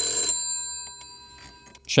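A telephone on the Cisco 1861 router's FXS port rings for an incoming call. The ring stops about a third of a second in and then fades away.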